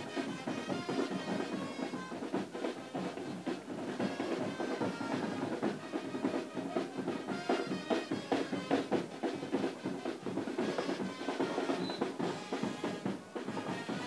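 Music with drums and percussion playing a steady beat.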